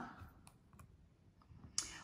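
A few faint clicks, the sharpest one near the end, from the slide being changed on the laptop or tablet screen.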